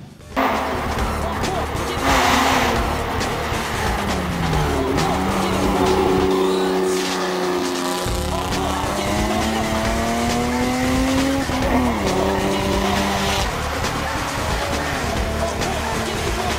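BMW E36 race car's engine pulling hard up a hill climb. Its pitch climbs slowly under load and drops sharply twice as it shifts up, with a burst of noise about two seconds in.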